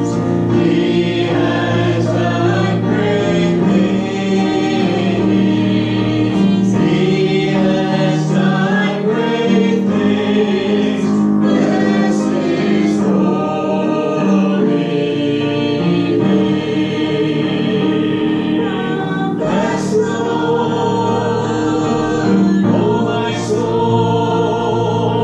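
A church congregation singing a hymn together, many voices holding a steady, sustained melody.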